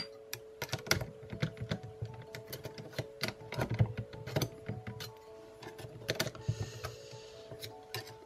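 Irregular light clicks and taps of a steel saw blade against the metal base plate and blade holder of a Parkside cordless jigsaw/sabre saw as it is pushed and wiggled in, several a second. The blade will not go into the holder.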